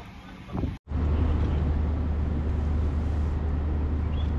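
An engine running steadily with a low drone, cutting in suddenly about a second in after a brief dropout in the sound.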